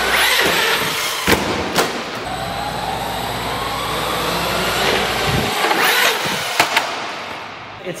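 Traxxas RC monster truck driving across a concrete floor, its tyres rolling and its motor whining higher as it speeds up, with a few sharp knocks as it hits and comes off a small ramp.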